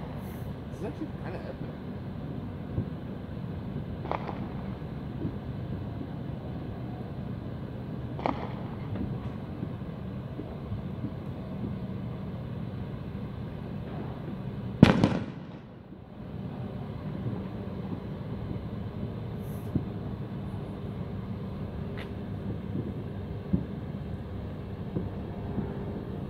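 Distant fireworks going off: a handful of sharp bangs several seconds apart, the loudest about halfway through, over a steady background murmur.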